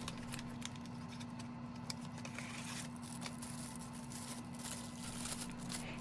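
Faint handling sounds of a small cardboard box being opened and a plastic-wrapped mini tripod being taken out: scattered light clicks and crinkles, over a steady low hum.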